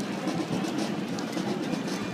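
Outdoor street crowd noise from a passing procession: a steady murmur with scattered, irregular clicks of footsteps and rolling wheels on asphalt.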